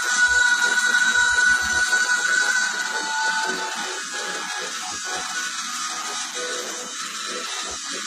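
A live metal band playing in an arena, heard from the stands. A long high note is held over the band for the first three seconds or so, then the music drops a little in level.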